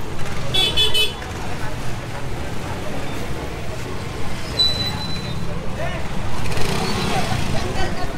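Diesel engine of a dump truck idling close by, a steady low rumble, amid street noise. A short high-pitched toot sounds about four and a half seconds in.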